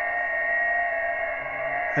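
Xiegu G90 HF transceiver's receiver audio: steady band noise with a thin, steady whistling tone in it.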